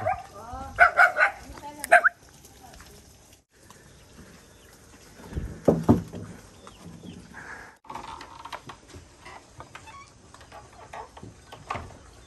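Farm dogs barking and yelping in short, scattered calls, the loudest in the first two seconds and again about six seconds in.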